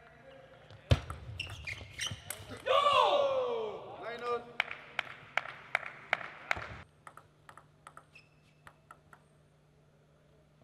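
Table tennis ball clicking sharply off bats and table in a rally, the hardest hit about a second in. About three seconds in a player gives a loud shout that falls in pitch. The last few seconds are quiet apart from a few light ball taps.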